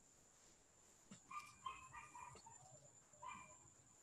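Faint bird calls in a near-silent lull: a short run of brief pitched calls about a second in, and one more near the end.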